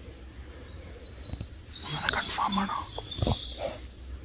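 A bird sings thin, high whistled notes in the forest. From about halfway in, a low hushed human voice comes in with a couple of soft clicks.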